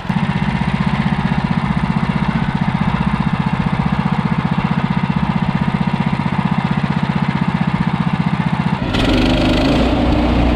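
The engine of a Woodland Mills HM130MAX band sawmill running steadily with a fast, even pulse. About a second before the end the sound turns louder and brighter.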